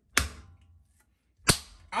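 Two loud, sharp slaps on a slab of raw pork lying on a wooden cutting board, about a second and a half apart, each with a short ringing tail: an ear ringer.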